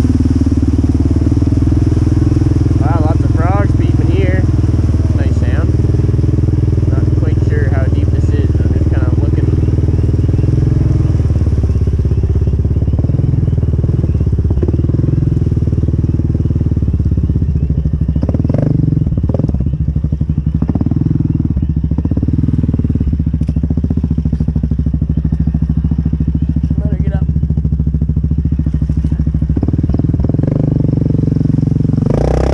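ATV engine running steadily under load as the quad wades through deep water. Water is pushed aside at its wheels and body.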